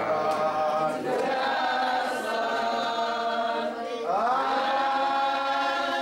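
A church congregation singing a slow hymn in unison, drawing each note out for a second or more, with a rising slide into a new note about four seconds in.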